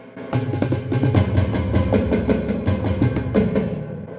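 Drum sounds from an Alesis drum module, triggered by light fingertip taps on hypersensitive piezo triggers inside hand-built wooden box drums. A quick run of hits, about six a second, starts a moment in over a deep low drum tone.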